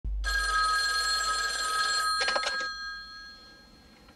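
A corded bedside telephone ringing, one long steady ring of about two seconds. A short rattle comes just after two seconds, as the handset is lifted, and the ring then dies away.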